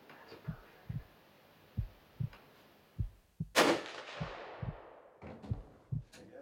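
A single rifle shot about three and a half seconds in, the loudest thing here, its report echoing away over about a second and a half. Around it, a soft low thumping at about two beats a second, like a heartbeat.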